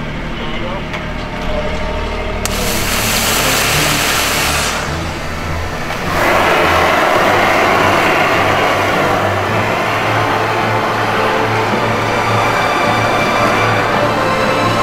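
Liquid nitrogen venting from the Nexø II rocket's launch equipment. A high hiss starts a couple of seconds in, then a loud, steady rushing begins suddenly about six seconds in as the big cloud spills out: in this rehearsal that marks the point where the rocket would lift off.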